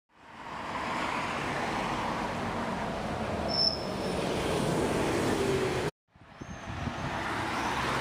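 Street traffic noise fading in and running steadily, with a short high squeak about three and a half seconds in. The sound cuts off abruptly about six seconds in and fades back in a moment later.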